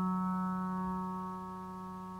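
Background piano music: one held chord, struck just before, slowly fading away.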